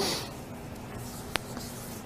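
A quiet pause in a small room: a short soft hiss at the start, then faint rustling and scratching, with one sharp click about a second and a half in.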